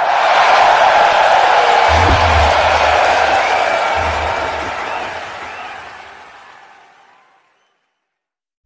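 Live concert crowd cheering and applauding at the end of the song, with two low booms about two and four seconds in. It all fades out to nothing near the end.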